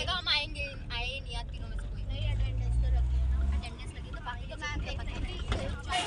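Van engine running as a low drone under the passengers' voices, louder for about a second and a half midway through.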